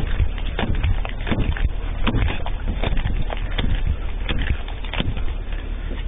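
Police body camera jostling as its wearer moves fast: a run of irregular knocks and thumps over a steady low rumble.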